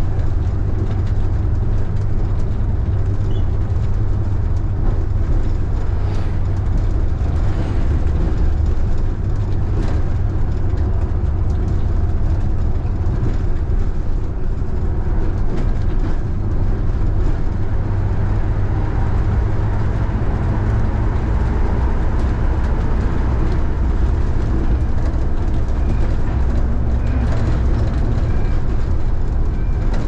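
City bus driving, heard from inside: a steady low engine and drivetrain drone over road noise, with a few light clicks and rattles.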